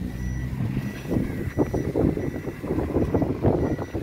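Vehicle cabin noise while riding along a road: engine hum that fades in the first second, then uneven rattling and knocking from the ride. A thin, steady high-pitched tone sounds throughout.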